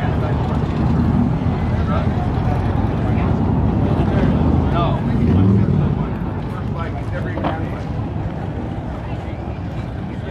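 Motorcycle engines running, a steady deep rumble that swells around the middle and eases off about six seconds in, under scattered crowd voices.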